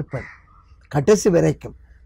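A crow cawing in the background, a few short calls, behind a man's speech.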